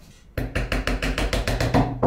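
A mallet tapping wooden parts of a puzzle lock, driving them home in a rapid, even run of about eight knocks a second that starts a third of a second in.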